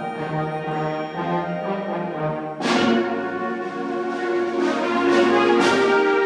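Symphonic band playing, brass prominent in sustained chords. About two and a half seconds in the full band comes in louder with a sharp accented strike, and two more strikes land near the end.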